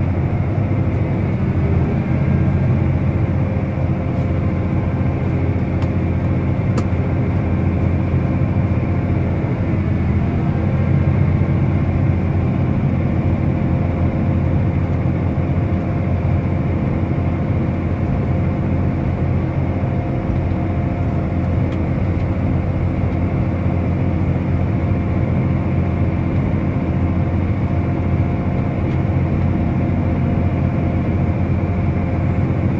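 Diesel engine of a John Deere tractor running steadily while driving across a field, heard from inside the cab as a constant low drone.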